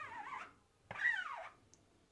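Squeegee dragged lightly over an ink-loaded screen-printing mesh to flood the stencil: two short squeaky scrapes, the second about a second in.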